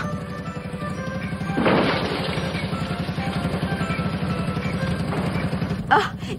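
Small truck's putt-putt engine running with a fast, even chugging, as a film sound effect under the soundtrack music. A short rush of noise comes about one and a half seconds in.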